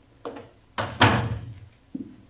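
Radio-drama sound effect of a door being handled and shut: a couple of light knocks, then a swing ending in a loud thud about a second in, and one more small knock near the end.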